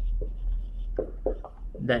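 Dry-erase marker writing on a whiteboard: a series of short strokes as words are written, with a man's spoken word near the end.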